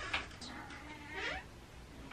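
A house cat gives one soft meow about halfway through, rising in pitch at the end.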